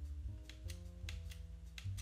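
Quiet instrumental background music: a slow run of held notes that change every half second or so, over light ticking percussion.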